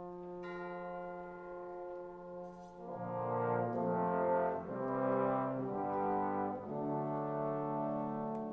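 Concert wind band playing a slow passage led by brass, with French horn and trombone prominent. A held chord gives way about three seconds in to moving chords that swell louder, then the band settles on another sustained chord near the end.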